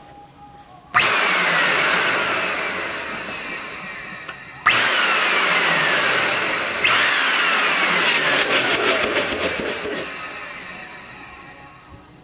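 A 12-amp Eureka vacuum cleaner motor, out of its housing, run in three short bursts. Each burst starts abruptly at full speed, then winds down with a falling whine. The last one dies away slowly.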